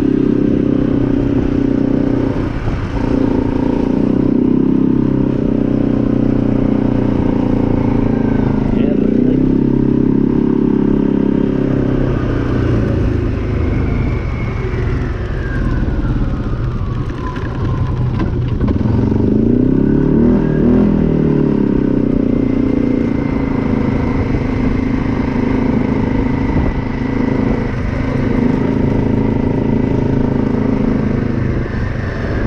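ATV engine running while the quad is ridden, its note steady for long stretches, dropping in pitch around the middle and then rising and falling again shortly after.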